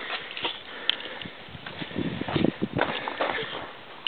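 Footsteps and handling knocks: irregular scuffs and thumps, busiest about two seconds in.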